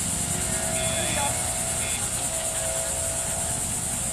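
Steady outdoor background: a constant high hiss and a low rumble, with faint steady hum lines and a few faint brief chirp-like marks. There is no distinct event.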